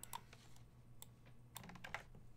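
Faint clicking of computer keys: a single click about a second in, then a quick run of several clicks near the end.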